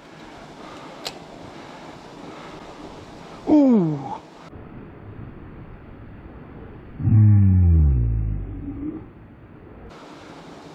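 Creek water running steadily, broken by a man's two wordless exclamations that fall in pitch: a short one about three and a half seconds in and a longer, louder, deep groan about seven seconds in.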